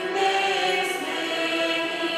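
A small church choir singing a hymn, holding long notes and gliding between pitches.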